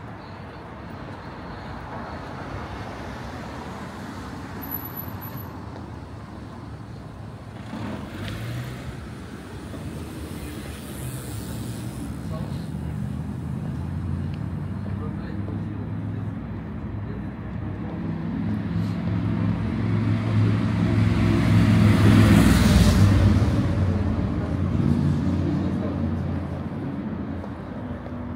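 Street traffic. A large motor vehicle's engine grows louder, passes close by about three-quarters of the way through, and fades away over the steady background of road noise.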